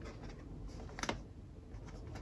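Light taps and handling noises of a cardboard box of paper coffee filters being picked up and turned in the hands, with one sharper click about a second in.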